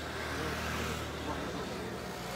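A motor vehicle passing, heard as a low rumble that swells and then fades out about one and a half seconds in, under faint background voices.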